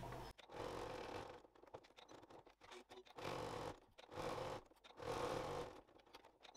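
Domestic sewing machine running in four short bursts of about a second each, with pauses between them, stitching a basting seam through several fabric layers.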